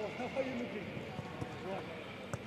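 Footballers calling and shouting to each other on the pitch during a passing drill, with a few sharp ball strikes in the second half.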